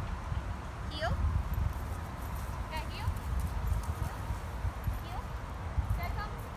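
A young dog whining in a few short, rising cries, over a steady low rumble of wind on the microphone.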